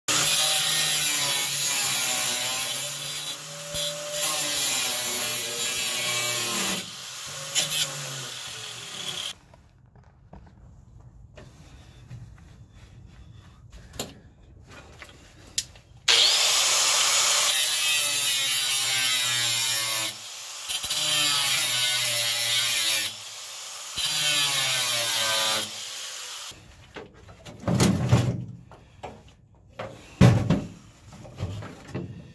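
Corded angle grinder running against rusty sheet steel of a car floor pan and bracket. It runs in two long spells with a quiet gap of several seconds between them, its motor pitch wavering as the wheel bites, then gives a few short bursts near the end.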